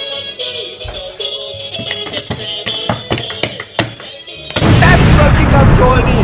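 Music with a regular beat playing from a radio alarm clock just switched on. About four and a half seconds in, a sudden, loud, sustained explosion-like blast takes over.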